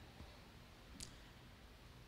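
Near silence: room tone with a low steady hum, and one faint short click about a second in.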